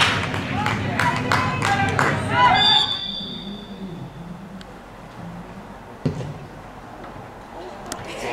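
Football spectators clap and call out, and this dies away about three seconds in as a referee's whistle blows one steady blast lasting about a second. After that there is quieter pitch-side ambience with faint distant voices and a single thud near six seconds.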